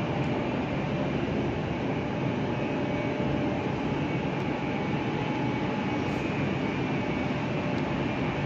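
Steady hum and rush of machinery in an electrical switchgear room, with a few faint steady tones running over it.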